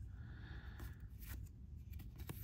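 Faint rustle and a few soft ticks of baseball trading cards sliding against each other as they are moved off a stack one at a time in the hand.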